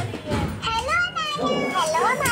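A young child's high-pitched voice, drawn out and gliding up and down in pitch.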